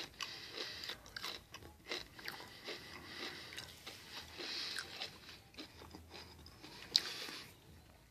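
A person chewing kettle-cooked potato chips close to the microphone: faint, irregular crunches, with one sharper crack about seven seconds in.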